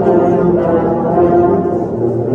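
A massed ensemble of more than a hundred tubas and euphoniums playing Christmas music together in low, held brass chords.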